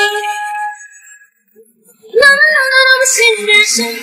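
Live female pop vocals with the backing track removed. A held sung note fades out within the first second, there is a brief gap of near silence, and a new sung phrase begins a little after two seconds in.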